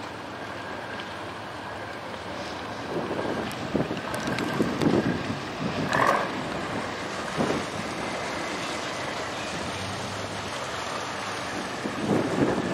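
Steady rumble of boat engines on the river, with gusts of wind buffeting the microphone from about three to eight seconds in, and a brief higher-pitched sound about six seconds in.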